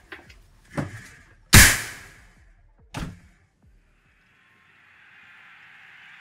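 A door shutting: a few knocks and one loud slam about a second and a half in, another knock about three seconds in, then a faint steady hiss.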